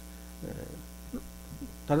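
Steady electrical mains hum in the microphone and sound system, running under a pause in the talk, with a couple of faint brief sounds about half a second in and near the middle.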